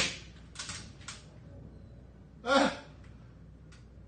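A man breathing hard in short puffs, then a brief strained vocal sound falling in pitch about two and a half seconds in, from the effort of holding a full drywall sheet up against the ceiling alone.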